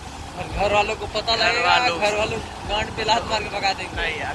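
A man's voice speaking over the steady low rumble of a moving motorbike and road noise.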